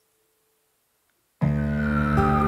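Near silence, then about 1.4 s in music starts abruptly: several held chord tones with one tone gliding steadily downward, the opening of a song.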